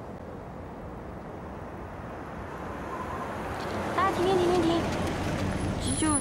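Car running at night, its engine and road noise a steady rumble that grows louder over the first few seconds as it draws near. A brief voice is heard from about four seconds in.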